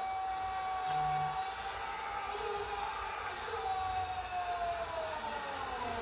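A siren holding one steady pitch for about three and a half seconds, then slowly falling in pitch toward the end.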